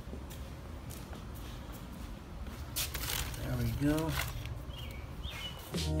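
Quiet outdoor background with a few sharp clicks and knocks of footsteps and handling about three seconds in, and two brief high chirps near the end.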